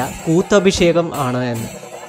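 A man's voice talking, with music underneath.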